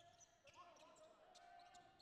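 Faint squeaks of sneakers on a hardwood basketball court, short gliding chirps, with a few faint taps.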